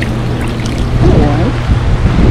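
Rooftop hot tub's jets churning and bubbling the water, with a steady low hum running underneath.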